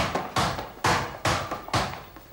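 A basketball being dribbled: five bounces, about two a second, each a sharp smack that rings away briefly.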